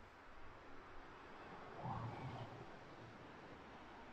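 Faint outdoor background: a steady low hiss, with a faint short sound swelling briefly about two seconds in.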